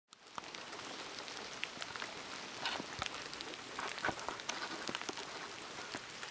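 Steady rain falling, with many single drops heard as short sharp ticks close by.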